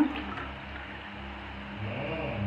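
Thick milky liquid pouring from a pan into a glass: a soft, steady pour.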